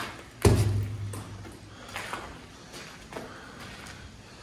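A single loud thud about half a second in, its low rumble dying away over about a second, followed by a few faint taps.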